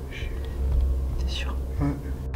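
Whispering: two short breathy hisses and a brief voiced sound near the end, over a steady low rumble.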